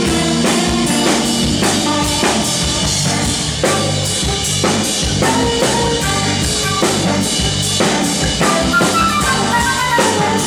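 Live rock band playing an instrumental passage, with drum kit and bass carrying the rhythm and a quick run of falling lead-guitar notes near the end.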